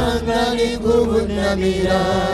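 Live gospel worship music: a voice sings long held, gliding notes through a PA, over a steady low instrumental backing.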